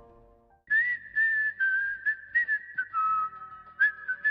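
A short whistled jingle: after the last music chords die away, a single high whistled melody of quick notes with small slides between them begins about two-thirds of a second in and carries on to the end.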